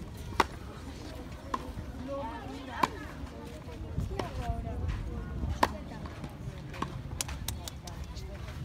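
Tennis balls struck by rackets in a practice rally on a grass court: sharp pops, the loudest about every two and a half seconds with fainter hits between. Indistinct voices murmur underneath.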